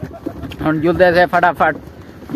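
A man's voice speaking in short phrases, after a brief pause near the start.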